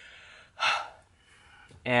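A man's quick, audible breath, a gasp-like intake about half a second in during a pause in his talk. His speech starts again near the end.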